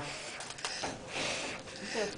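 A small boy blowing out birthday-cake candles: short, breathy puffs of air, the strongest about a second in and another starting near the end.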